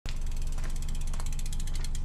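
The rear freehub of a Cube road bike ticking rapidly as the bike is wheeled along without pedalling, about twenty clicks a second, slowing slightly near the end.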